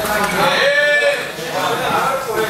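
A person's drawn-out shout, one held call of about half a second, with other voices around it.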